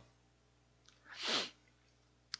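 A man's single short, breathy exhalation about a second in, lasting about half a second.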